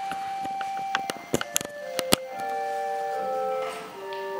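Organ playing held notes, a single sustained note moving to a lower chord about halfway through. A few sharp clicks and knocks sound between one and two seconds in.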